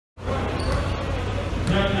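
Basketball bouncing on an indoor court floor, a few sharp bounces over a steady background of voices.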